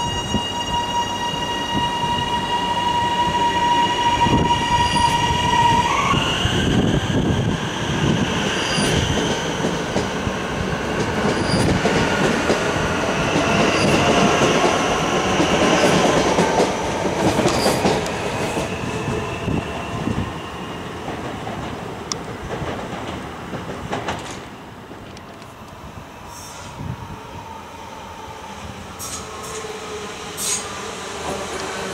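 HCMT electric multiple unit pulling away from a station platform: a steady electric whine that starts rising in pitch about six seconds in as the train accelerates, over wheel-on-rail rumble. The sound drops off and turns quieter about four-fifths of the way through.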